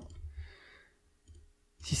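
Mostly quiet room: a faint exhaled breath near the start, then a faint computer mouse click a little past halfway. A man's voice starts at the very end.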